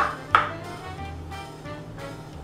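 Two knife chops through strawberries onto a wooden cutting board, about a third of a second apart, over steady background music.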